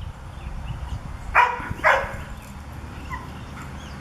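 Standard poodle barking twice in quick succession, loud and sharp, at squirrels up in the trees.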